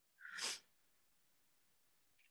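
A single short breathy burst from a person, under half a second, picked up by a meeting microphone, then near silence.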